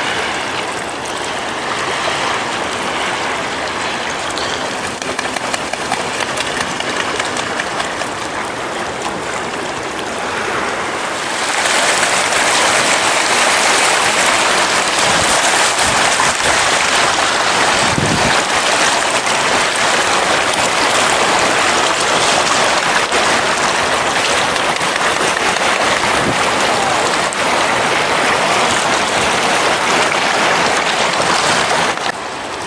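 Small waves washing against a rocky shoreline: a steady hiss of moving water that gets louder about eleven seconds in.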